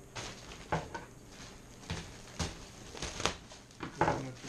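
Clear plastic wrapping around a crab pot crinkling and rustling as it is handled, in short irregular bursts, about seven in four seconds.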